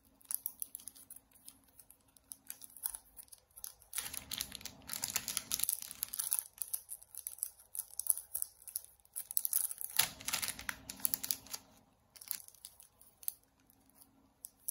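Plastic sleeves around bundles of banknotes crinkling and rustling as the bundles are picked up and flipped by hand, with scattered small clicks and two louder spells of rustling, about four seconds in and again about ten seconds in.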